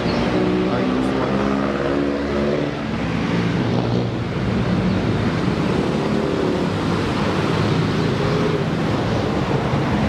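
Street traffic noise: a steady rush of road noise with the drone of vehicle engines, one engine drone standing out during the first three seconds and another from about six to nine seconds in.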